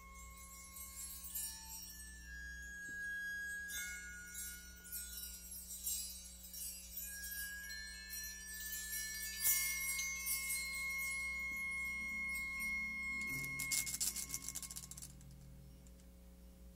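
Meditative instrumental music: chime-like ringing tones held at several pitches over a shimmering high wash, with a quick dense rattle near the end.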